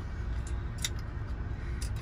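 A couple of light metallic clicks, about a second apart, as the steel extension pipe of an EzRed 3/4-inch drive ratchet is slid out along the handle, over a steady low hum.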